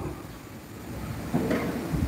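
Low, steady background noise of a crowded hall full of seated people, with a brief faint voice about one and a half seconds in.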